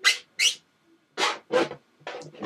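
A felt-tip marker drawing on an inflated rubber balloon: four short rubbing strokes, in two quick pairs about a second apart.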